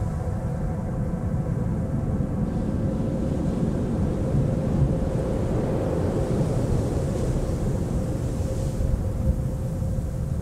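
Deep, continuous storm rumble under a sustained ambient drone of held synth tones. A soft hiss swells in the high end from about six to nine seconds in.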